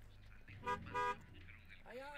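Two short car-horn honks about a third of a second apart, each a steady flat tone.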